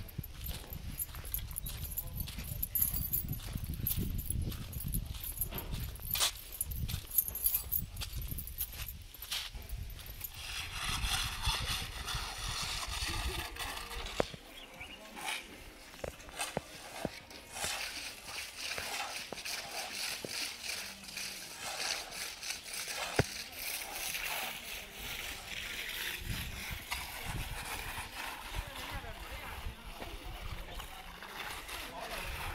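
Indistinct background voices over outdoor noise, with scattered sharp clicks. A low rumble fills the first ten seconds or so, then gives way to a brighter hiss.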